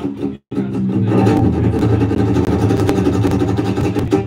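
Two guitars playing live, an acoustic guitar and a second guitar, in a small club. The sound cuts out completely for an instant about half a second in, then comes back fuller and denser.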